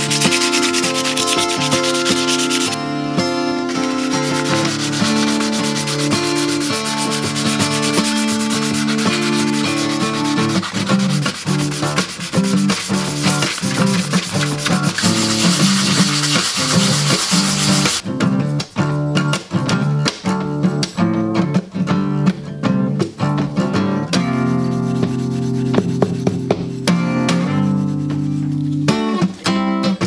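Steel knife blade being sanded by hand to take off rust: a dense, steady rasping rub for about the first eighteen seconds, with a brief pause about three seconds in. Acoustic guitar music plays underneath throughout.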